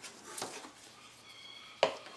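Soft taps and then one sharp knock near the end as a wooden ruler and a French curve are shifted and set down on paper over a tabletop.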